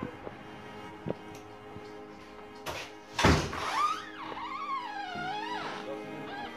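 A glass shop entrance door in a metal frame shutting with a single loud thunk about three seconds in, over steady background music.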